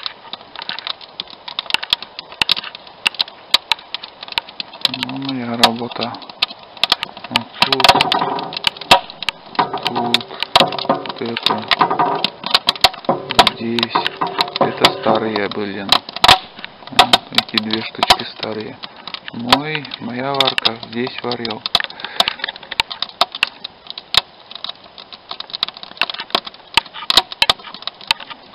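Wood fire in a steel-barrel barbecue crackling and popping with many sharp, irregular snaps, while a man talks at times.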